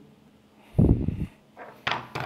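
A dull, low thump of handling noise, about half a second long, as the phone and cable are moved and laid down on the table. A brief sharp click follows near the end.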